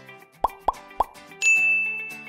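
Motion-graphic sound effects over light background music: three quick pops about half a second to one second in, then a bright ding that rings on and slowly fades.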